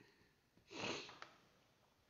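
A single short sniff through the nose, about a second in, followed by a faint click.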